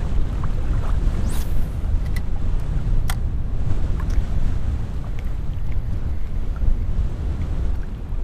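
Strong wind buffeting the camera microphone: a steady low rumble, with a few brief clicks scattered through it.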